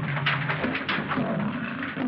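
A caged lion growling and snarling without a break, heard on an old film soundtrack with a narrow, muffled frequency range.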